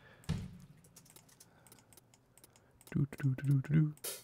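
Typing on a computer keyboard: a run of light, quick key clicks. A short murmured voice comes in about three seconds in.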